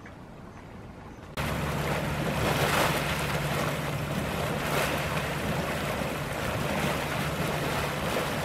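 Hot spring water boiling up in a pool, a steady churning, gushing rush that starts suddenly about a second and a half in; before that, only a faint outdoor hiss.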